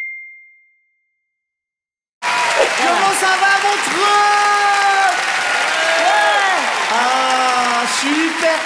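A single bright chime rings and fades out within the first second. After a short silence, an audience breaks suddenly into loud applause and cheering, with drawn-out whoops from voices in the crowd.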